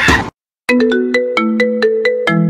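A ringtone-style melody: a quick run of short, bright struck notes, several a second, each ringing briefly. It follows a sudden cut from music with a beat to a moment of silence.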